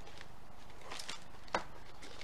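Packaging being handled in a plastic bowl: a soft rustle of a cookie-mix packet about a second in, then one sharp tap shortly after.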